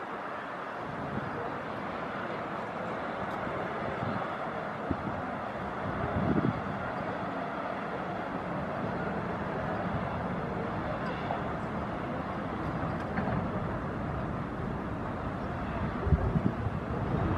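Steady outdoor background noise, an even hiss and hum with no distinct events, and a short low bump about six seconds in.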